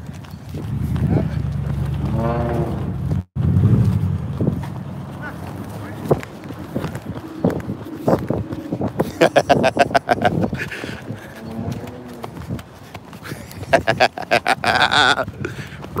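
Quick footsteps of a person running on a concrete sidewalk, a rapid patter of knocks, with a man's voice and laughter breaking in. A low rumble of traffic fills the first few seconds.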